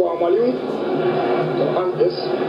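Speech: a voice talking, with no other sound standing out.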